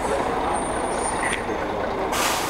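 A bus pulling up, its engine running amid street noise, with a thin high brake squeal for about a second in the middle.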